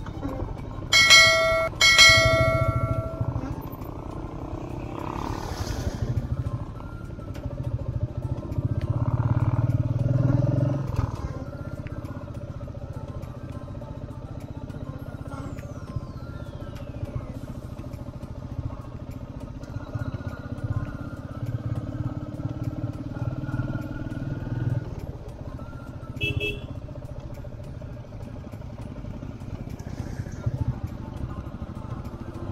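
Motorcycle engine running low and steady while riding a rough gravel road, picking up for a few seconds near the middle. Two short horn beeps come about one and two seconds in.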